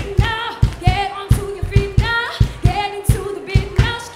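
A woman singing live, her voice wavering on held notes, over a steady drum beat of about four strokes a second from a large hand-held frame drum.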